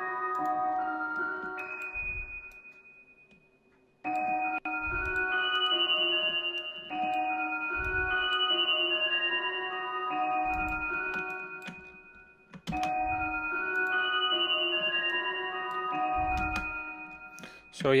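A dark trap lead melody played back from an Omnisphere software synth patch in D sharp, with low bass notes underneath. The loop stops and starts over twice, about four seconds in and again near thirteen seconds.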